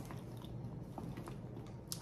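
Faint handling noise of a leather handbag being turned in the hands, with a few light clicks of its metal hardware, the clearest just before the end.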